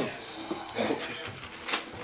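Folded paper ballots being unfolded and handled, with a few short rustles and clicks, under a faint murmur of voices in a small room.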